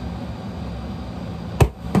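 A steady low hum, then a single sharp knock on the tabletop about one and a half seconds in.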